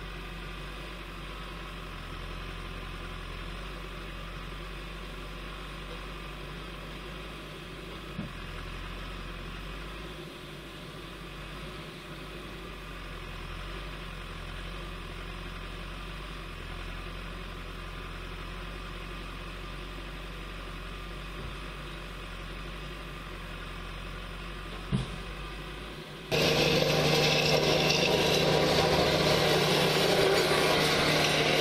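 Heavy diesel construction machinery idling steadily, with two brief knocks. About 26 seconds in, a much louder sound takes over: the diesel engine of a tandem road roller running as its drums roll over freshly laid bituminous gravel.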